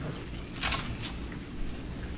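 Quiet room tone with a steady low hum, broken once just over half a second in by a single short hiss.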